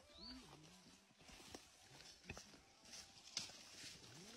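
Near silence, with a few faint footsteps through grass about a second apart and a short low sliding tone near the start.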